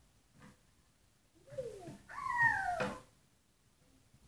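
A young child's voice: two high calls in quick succession, each falling in pitch, starting about a second and a half in, the second one longer and louder.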